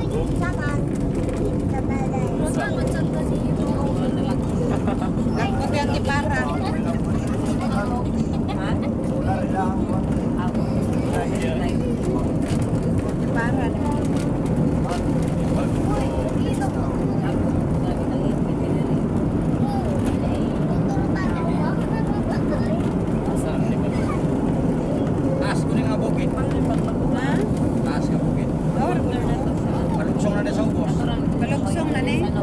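Steady running noise of a moving road vehicle heard from on board, engine and road noise together, with voices talking over it at intervals.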